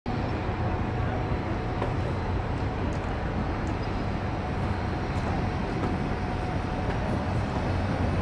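DHC-6 Twin Otter floatplane's two turboprop engines heard from a distance as it comes in to land on the water: a steady low drone with a faint steady whine over it.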